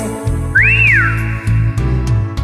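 Karaoke backing music in an instrumental gap between sung lines, with a steady low bass line and one high tone that slides up and back down about half a second in.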